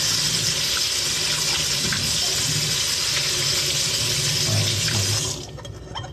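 Kitchen tap running in a steady stream into a sink while a plate is rinsed under it; the water is shut off about five seconds in.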